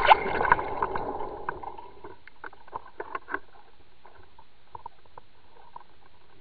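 Underwater sound picked up by a Water Wolf fishing camera on the line: water rushing over the housing with clicks, fading away over the first two seconds, then scattered faint clicks and ticks.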